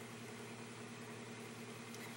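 Faint steady background hum with light hiss: room tone.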